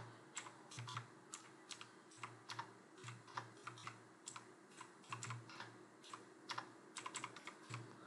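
Faint computer-keyboard keystrokes typing a word at an uneven pace of about three keys a second, stopping shortly before the end.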